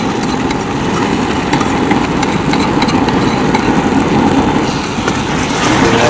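Steady rushing roar of a gas burner under a steel pan of sauce, with faint crackling from the pan.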